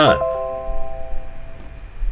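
A bell-like chime of several tones sounding together, starting just as the speech breaks off and dying away within about a second and a half.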